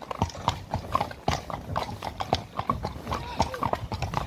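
Hooves of several horses clip-clopping at a walk on a wet tarmac road, the steps overlapping in an uneven run of sharp knocks, several a second.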